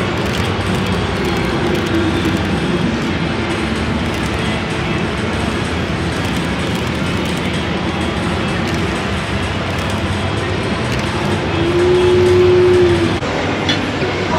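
Steady, loud din of a busy exhibition hall, with background music playing. A single held tone stands out briefly near the end.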